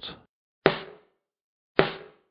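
Two snare drum hits about a second apart, played back through a noise gate. Each one is cut to silence as it decays, with the kick drum bleed gated out. The snare is not yet compressed.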